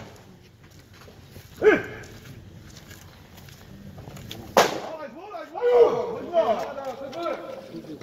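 A fastball pops sharply into a catcher's leather mitt once, about halfway through. Players call out before and after it.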